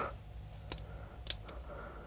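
Three faint small clicks from a disc detainer pick turning the discs inside a FU Volante disc detainer lock as it is being picked.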